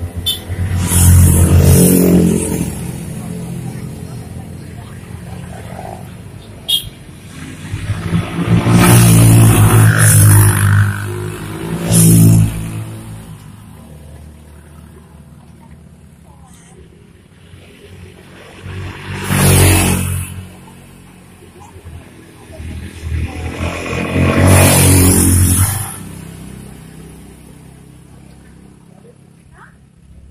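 Motorcycles ridden hard up a steep road, passing close one after another. There are about five loud pass-bys, each engine swelling and fading away, with quieter spells between.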